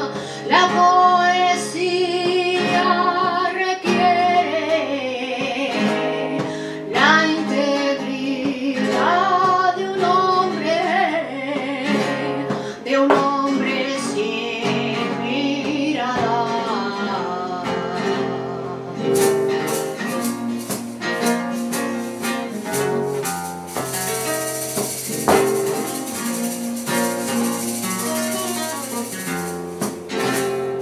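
Woman singing a flamenco fandango de Alosno over a Spanish guitar. About two-thirds of the way in, the voice drops out and the guitar carries on alone, strummed fast.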